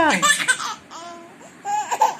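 Baby laughing in short bursts of giggles, with a brief pause in the middle before laughing again.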